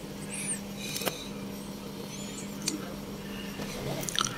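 Scissors snipping into the corners of a cotton neck opening, one clear snip about a second in and a fainter one later, over a steady low hum.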